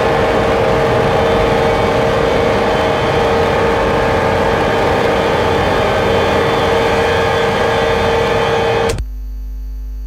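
Loud, dense wall of electronic noise with a steady held tone, live-processed radio feedback. It cuts off abruptly about nine seconds in, leaving a steady low hum with a faint falling tone.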